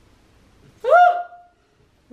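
A short, high-pitched vocal sound about a second in, rising in pitch and then held briefly before it stops.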